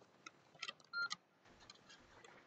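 A few soft computer clicks, with a short electronic beep about a second in.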